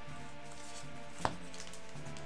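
Quiet background music with held tones, and a single short tap about a second in.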